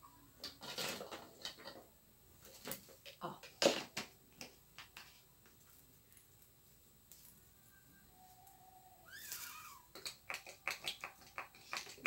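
A plastic bottle being handled and a pump dispenser fitted to it, with scattered light clicks and knocks. Near the end comes a quick series of sharp clicks as the pump is worked to draw up and dispense the liquid soap.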